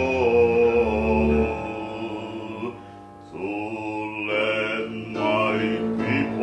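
A man singing solo in slow, drawn-out, chant-like notes that waver in pitch, with a short pause for breath about halfway through.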